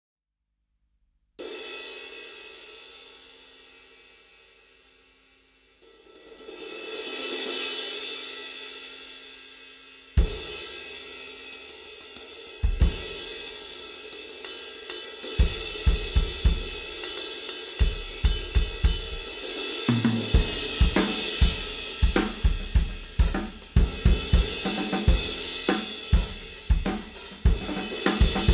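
Paiste 19" Signature Prototype crash cymbal (bronze, 1905 g) struck once and left to ring out, then swelled up and fading away again. About ten seconds in it is hit hard, and a drum-kit groove follows, with hi-hats, snare and bass drum under repeated crash accents, getting louder toward the end.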